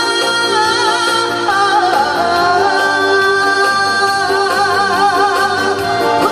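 A woman singing a Korean trot song into a microphone over amplified backing music, holding long notes with a wide vibrato.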